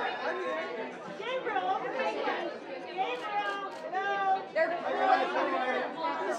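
Many voices of red-carpet photographers calling out over one another, shouting the subject's name to get him to look their way.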